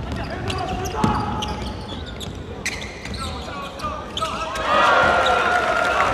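Basketball game sound in a gym: a ball bouncing on the hardwood court in sharp knocks, with voices shouting over it. The voices get louder about three-quarters of the way through.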